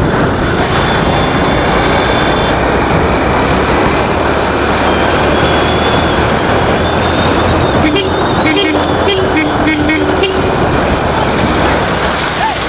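Motorbike engines running with steady rushing road and wind noise from riding along with the racing bullock carts. About eight seconds in, a vehicle horn beeps rapidly for about two seconds.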